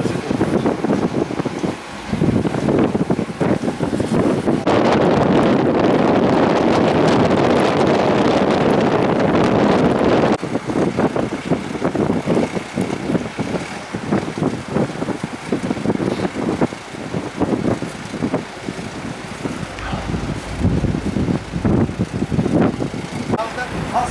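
Wind buffeting the microphone, heaviest in the first half, mixed with indistinct voices of people nearby and the running of vehicle engines.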